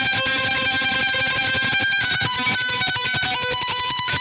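Eight-string electric violin improvising with live looping: held notes over a dense, fast rhythmic layer, all at a steady level.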